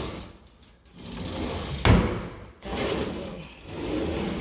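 Wooden kitchen cabinet drawers sliding open and shut, with a sharp knock just before two seconds in as one closes.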